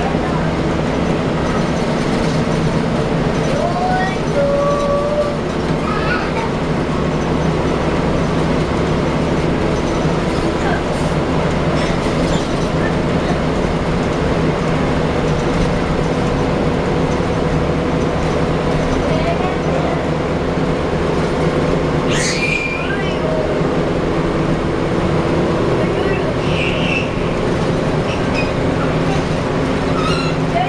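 Gillig Low Floor transit bus heard from inside its rear cabin: its rear-mounted Cummins ISL inline-six diesel and Allison B400R transmission running with a steady hum. A short sharp rattle or click comes about 22 seconds in.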